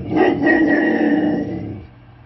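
A golden retriever giving one long vocal call with a ball held in its mouth, lasting most of two seconds before it stops.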